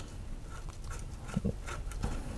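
Screwdriver tightening a terminal screw on a single-pole light switch: faint, scattered small clicks and scrapes of metal on metal as the screw is turned down onto the wire.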